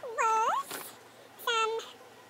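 Domestic cat meowing twice: a longer call that dips and then rises in pitch, and a short second meow about a second later.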